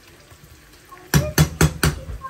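A metal spoon knocks four times in quick succession against a nonstick frying pan, starting about a second in.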